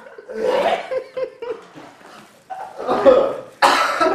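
A man coughing and gagging over a plastic bag in a few short bouts, the loudest and most sudden near the end.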